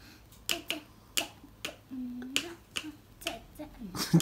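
Small wooden xylophone struck with two thin mallets: a slow, uneven run of about nine short, dry notes.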